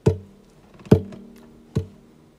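Guitar strummed three times, each chord left to ring for a moment before the next; the second strum is the loudest.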